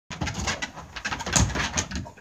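A dog biting and tossing a water-filled rubber balloon on a wooden deck: a rapid, irregular run of short knocks and scrapes.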